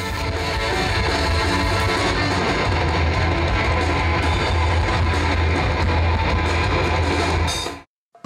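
A rock band playing: electric guitars strummed over bass guitar and drum kit, steady and full, cutting off suddenly near the end.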